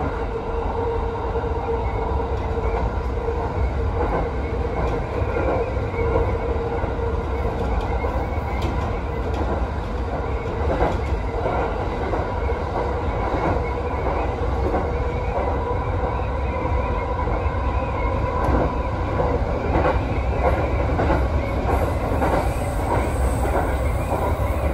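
An electric commuter train running steadily along the track, heard from inside the driver's cab. There is a constant rumble of wheels on rail, a held whine, and occasional clicks as the wheels pass over rail joints.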